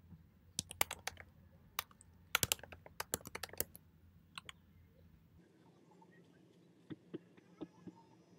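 Typing on a computer keyboard: quick bursts of key clicks, the busiest in the first half, then only a few scattered keystrokes near the end.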